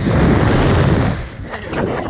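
Rushing wind buffeting the onboard microphone of a Slingshot ride capsule as it flies and tumbles. The noise is loud for about the first second, then eases off.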